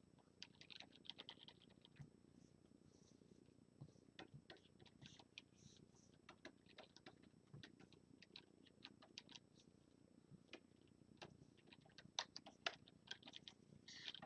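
Near silence broken by faint, scattered clicks and taps: a pen stylus on a Wacom Cintiq 22 drawing screen and keyboard shortcut keys, with the taps coming more often near the end.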